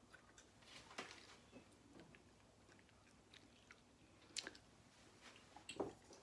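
Faint dry-erase marker squeaks and taps on a whiteboard as letters are written, a few short, sharp strokes against near silence.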